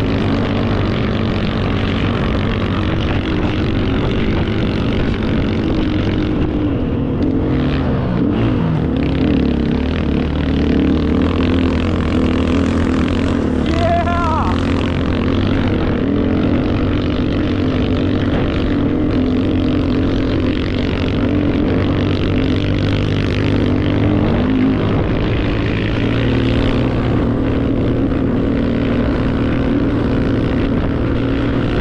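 Motorbike engine running steadily under way, its pitch shifting about eight seconds in, with a short rising tone about fourteen seconds in.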